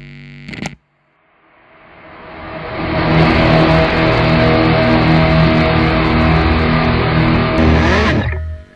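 A short burst, under a second long, then a distorted electric guitar chord that swells up from silence over about two seconds and rings out loud and held.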